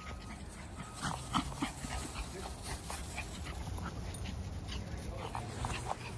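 Small dogs yipping and barking off and on, a series of short calls, most of them between about one and five seconds in, over a steady low rumble.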